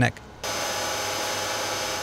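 Metalworking machine tools running in a workshop: a steady whine with a hum of several fixed tones, cutting in abruptly about half a second in and holding at an even level.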